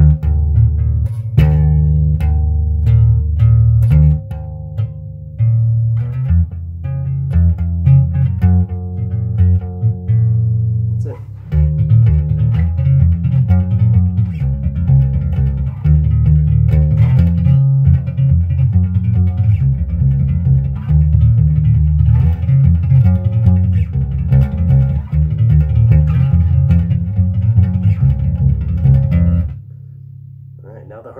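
Bass guitar played with a double-thumb thumping technique: the stiff thumb strikes the strings and catches them again on the upstroke as the wrist rotates, in a fast repeating pattern of doubled catches. The notes come faster and denser from about a third of the way in, and the playing stops just before the end.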